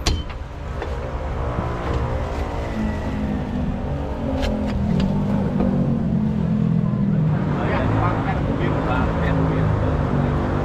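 A motor vehicle engine running, its pitch slowly shifting, with a few sharp knocks early on. Voices join in near the end.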